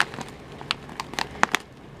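Snack pouch handled in the hands as it is turned over: a few scattered crinkles and sharp clicks.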